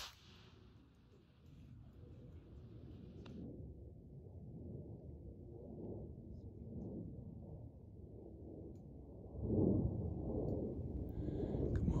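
Low wind rumble on the microphone, growing louder about nine seconds in.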